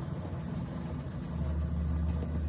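Flour being sifted through a metal mesh sieve shaken over a mixing bowl, a soft rustle, over a steady low hum that grows louder about a second and a half in.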